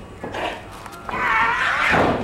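A loud, high-pitched yell, held with a wavering pitch for about a second in the second half, during a lift in a wrestling match.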